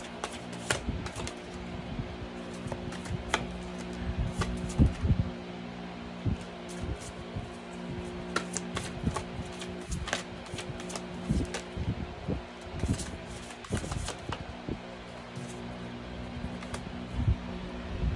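Oracle cards being handled, shuffled and laid down on a wooden table: irregular light slaps and clicks. Under them is a steady background music drone.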